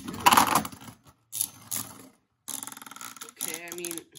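Two Beyblade spinning tops striking each other in a plastic stadium: a sharp hit at the start and loud rattling clashes just after, then scattered clicks and, from about halfway, rapid rattling and scraping as one top loses spin and wobbles.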